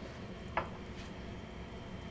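Hard-candy sugar syrup boiling in a stainless steel pan, bubbling faintly and steadily, with one brief soft sound about half a second in.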